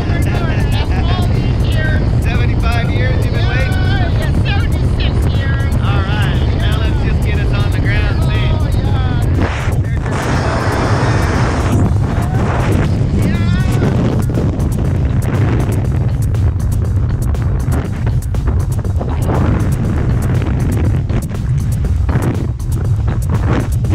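Wind buffeting the microphone of a camera worn under a tandem parachute canopy: a steady low rumble, with a louder, hissier gust about ten seconds in that lasts around two seconds.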